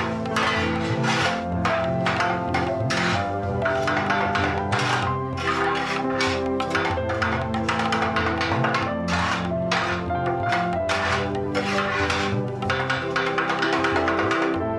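Kottu roti being chopped on a flat steel griddle with two metal blades: sharp, irregular metallic clattering strikes, about two to three a second, over background music.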